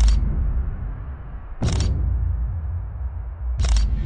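A deep, steady rumble with three short, sharp clicks: one at the start, one just under two seconds in, and one near the end.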